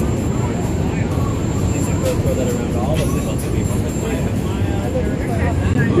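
Steady low rumble on the open deck of a moving cruise boat, wind and engine drone together, with faint passenger chatter over it.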